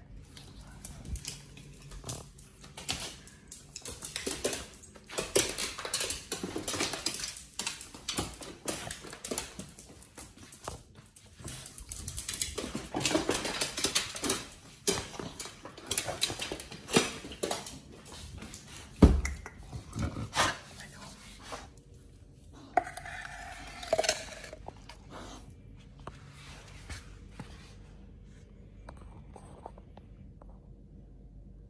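Pit bull moving about on a tile floor: scattered clicks and knocks, with one heavy thump a little past the middle. About two-thirds of the way through there is a brief high-pitched vocal sound.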